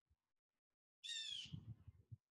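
A single short squawk from a bird about a second in, with a few soft low thumps after it.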